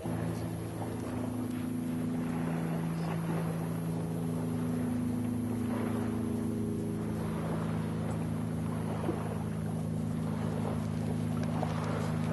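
A steady low motor hum, several tones held level throughout, starts suddenly and runs on under a rough hiss.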